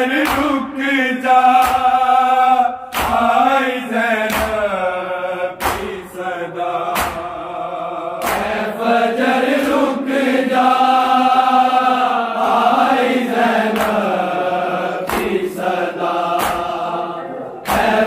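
A group of men chanting a noha, a Shia lament, in drawn-out sung lines. Sharp slaps of hands striking bare chests (matam) mark the beat about every one and a half seconds.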